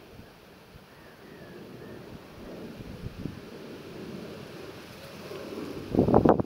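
Wind rumbling on the microphone outdoors, a low, even noise that slowly grows louder.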